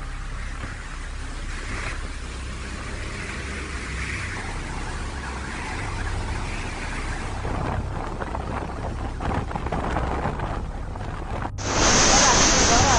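Cyclone wind and rain: a continuous rushing of wind with a low rumble, swelling slightly over the seconds. About half a second before the end it cuts off abruptly and a louder hiss begins.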